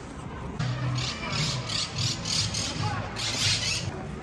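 Footsteps crunching on a sandy gravel path, about three a second, with a longer scrape near the end, over faint distant voices.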